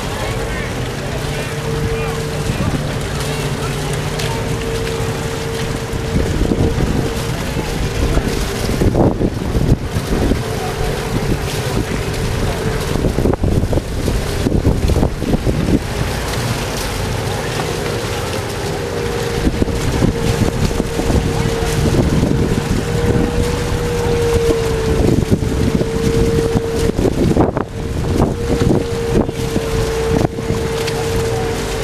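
Small outboard motor on an inflatable dinghy running steadily at speed, a constant drone that wavers slightly in pitch, with wind buffeting the microphone in repeated gusts.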